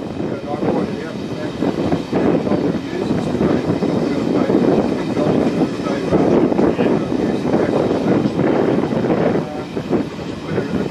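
Steam-hauled excursion train in motion heard from the locomotive's side window: a continuous rumble and rush of wheels on rail and wind, with a rough, irregular clatter as the train runs close alongside a standing train of coal hopper wagons.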